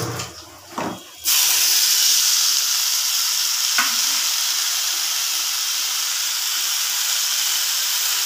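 Chopped leafy greens frying in hot oil in a kadai, making a steady loud sizzle as a spatula stirs them. The sizzling starts suddenly about a second in, and there is a single light click partway through.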